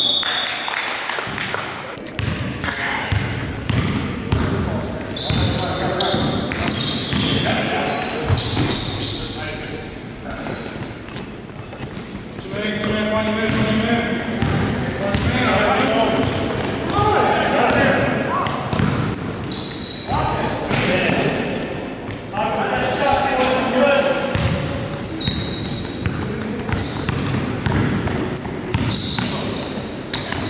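A basketball bouncing on a hardwood gym floor during a game, with players' voices echoing in the large hall.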